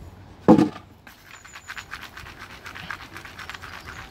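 A gardening sieve full of sand-and-compost potting mix being shaken to sift it. There is a single loud thump about half a second in, then a steady, rapid scratching rattle of grit and woody bits on the mesh.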